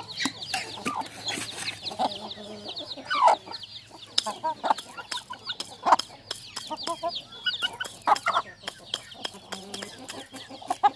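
Thai native chickens clucking as they feed, with sharp clicks of their beaks pecking grain from a ceramic bowl.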